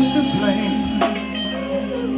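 Live R&B band playing, with guitar and drum kit, under a man singing, with a drum hit about a second in.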